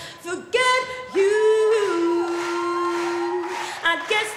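A woman singing solo without accompaniment: a short phrase, then a scoop up into one long held note.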